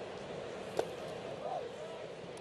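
Ballpark crowd murmuring, with one sharp pop a little under a second in: a pitched baseball smacking into the catcher's mitt.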